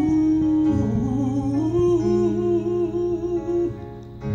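A man's voice singing one long wordless note that breaks into a wavering vibrato and ends just before the close, over guitar-led music.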